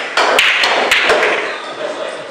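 Pool balls clacking together several times in quick succession on a pool table, with a heavier knock about a second in.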